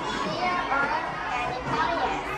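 Several children talking indistinctly at once, overlapping chatter with no clear words.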